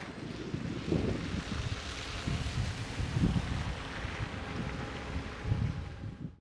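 Wind on the microphone outdoors: an uneven low rumble that swells and eases in gusts, over a faint hiss.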